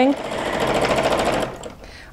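Janome home sewing machine running fast as it free-motion quilts a stipple through a basted quilt sandwich: a rapid, even needle rhythm that winds down and stops about a second and a half in.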